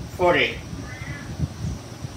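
A bird calling: one short call just after the start, then a fainter one about a second later.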